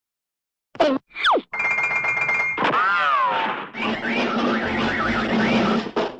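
Cartoon-style sound effects over an edited intro: two quick falling-pitch swoops about a second in, then a dense bed with a wobbling, boing-like tone in the middle, running on into a busy, loud sound effect near the end.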